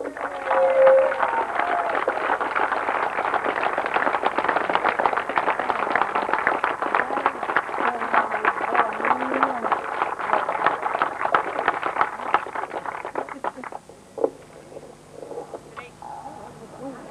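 Audience applauding for a medal winner, with a few voices mixed in; the clapping dies away near the end.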